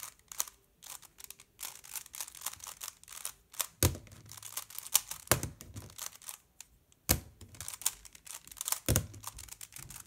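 A stickerless 3x3 speed cube is turned fast by hand, giving rapid runs of light plastic clicking as its layers snap round. There are a few heavier clacks and a short pause a little past the middle.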